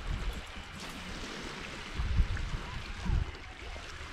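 Steady hiss of wind and lapping lake water, with two low rumbles of wind on the microphone about two and three seconds in.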